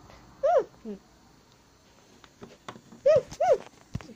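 Short, high, voice-like calls, each rising then falling in pitch: one about half a second in, and two in quick succession near the end, with a few faint clicks between.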